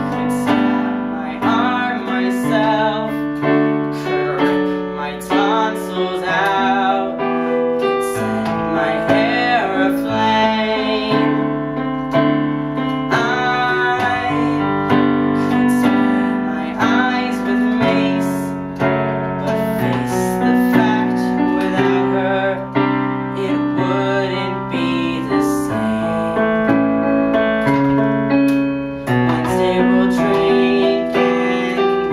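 A young man singing a musical-theatre song solo over piano accompaniment, his voice wavering with vibrato on held notes.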